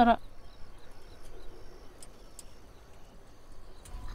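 A pause in speech: faint background hiss with a few faint, short high ticks scattered through it, after a woman's voice stops at the very start.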